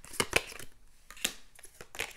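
Tarot cards being handled and shuffled: a few sharp snaps and rustles of card stock, loudest in the first second, as a card is drawn from the deck and laid down.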